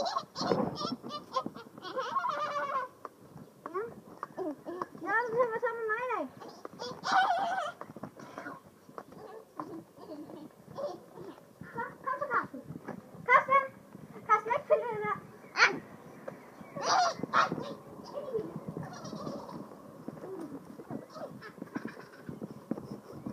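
Young children's high-pitched voices, calling out, squealing and babbling in short bursts throughout, with no clear words.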